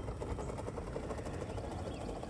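A steady low rumble with a fast, faint ticking.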